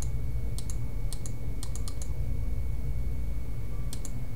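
Computer mouse button clicking repeatedly on the undo button: short sharp clicks, several in quick pairs in the first two seconds and another near the end, over a steady low hum.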